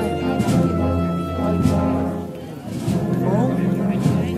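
Processional wind band (banda de música) playing a march: sustained brass chords with a few percussion strikes.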